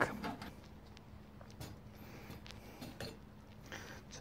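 A few faint, scattered clinks and knocks from a stainless wire basket being lifted out of an ultrasonic cleaning tank, with a faint steady low hum underneath.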